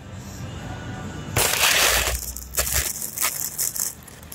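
Paper food bag being opened and handled: a loud crinkle starts about a second and a half in, followed by a run of shorter crinkles and rustles.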